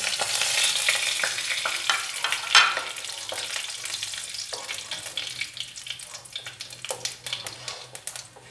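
Whole cumin seeds, bay leaves and dried red chillies sizzling and crackling in hot mustard oil in a kadai, with a spatula stirring them. The spluttering is strongest in the first three seconds, then thins to scattered pops.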